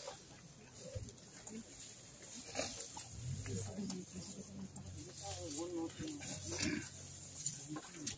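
Low voices of a group of mourners, with wavering, broken cries of someone sobbing, strongest a few seconds before the end.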